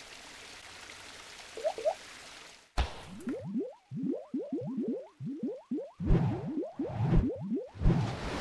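Animated logo sting sound effects. A soft whoosh is followed by a sharp hit about three seconds in, then a rapid string of short rising blips, about four a second. Low thumps join the blips in the last two seconds.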